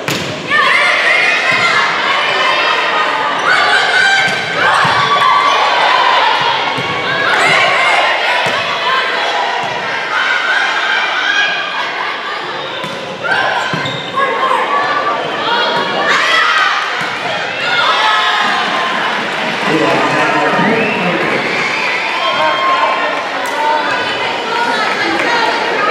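Volleyball rally on a gym's hardwood court: sharp thuds of the ball being hit and bouncing, under players' shouts and spectators cheering and calling out in repeated swells. It is all heard in a large indoor hall.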